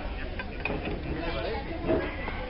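Background voices talking at a moderate level, with a few faint clicks, and a brief louder sound near the end.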